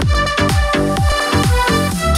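Marshall Stockwell II portable Bluetooth speaker playing an electronic dance track at its default EQ setting. Falling-pitch bass kicks come about three times a second.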